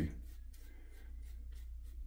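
Badger shaving brush working shave-soap lather on the face and chin, a soft bristly scrubbing in quick, even strokes of about four or five a second.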